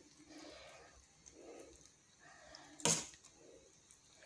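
A metal spoon spreading filling onto bread slices in a frying pan, mostly faint, with one sharp clink of the spoon about three seconds in.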